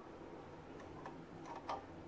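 A metal spoon lightly clinking against a steel pan while skimming cream off milk: a few faint ticks, the loudest one near the end.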